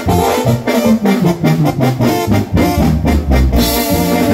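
Live grupero band playing an instrumental intro: a brass-sounding keyboard melody over bass and drums, with a cymbal crash near the end.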